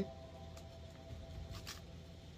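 Faint rustles of a woven basket being lifted and handled, a couple of brief scrapes over a low steady hum.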